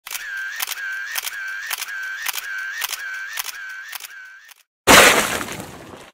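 Intro sound effect: a regular ticking with a ringing tone, about two ticks a second, stops after about four and a half seconds. A moment later comes a sudden loud burst of noise that fades away over about a second.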